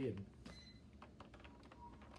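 A man's speaking voice trailing off on a word just after the start, followed by quiet room tone with a few faint clicks.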